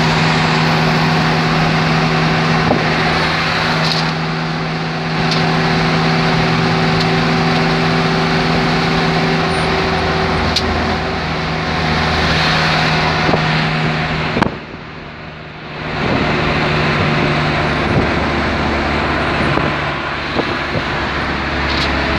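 Engine and road noise heard from inside a moving vehicle on a highway: a steady low engine hum under a wash of tyre and wind noise. About two-thirds of the way through the noise drops sharply for a second or so, then returns.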